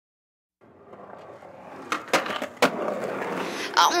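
Sound-effect opening of a pop song's recorded track: a rolling noise that swells up from silence, with three sharp clicks through it. A voice says "Oh" at the very end.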